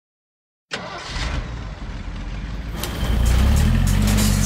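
Cartoon sound effects: a roller shutter door rattling open, then a bus engine starting and rumbling steadily, louder from about three seconds in.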